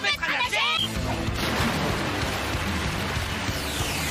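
Water splashing and churning as swimmers race down a pool, a dense rushing noise from about a second in, over steady background music. A short shout comes at the very start.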